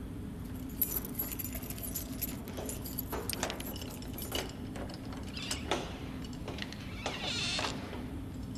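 Keys jangling with metal clicking and rattling at a wire-mesh door, then a brief scraping squeal near the end, over a low steady hum.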